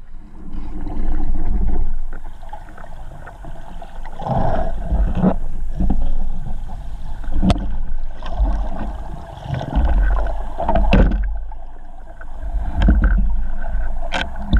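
Underwater recording of a spearfisher swimming: a continuous low, muffled rumble of water moving around the camera that swells and fades. A few sharp clicks or knocks are heard, about four in all.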